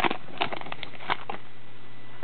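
Foil trading-card pack wrapper crinkling in a handful of short crackles as the cards are slid out of it, stopping after about a second and a half.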